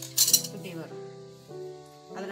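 A brief metallic clink from a pair of steel tailoring scissors about a quarter second in, over soft piano music.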